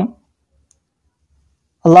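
A man's voice finishing a spoken phrase, then a pause of near silence for over a second and a half, with a faint tick in the middle, before he starts speaking again near the end.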